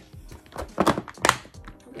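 A clear plastic compartment organizer box of nail tips being grabbed and lifted, giving two sharp plastic knocks about half a second apart.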